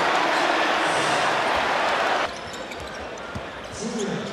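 Arena crowd noise after a basket, cut off abruptly about two seconds in, then quieter gym sound with a basketball being dribbled on a hardwood court.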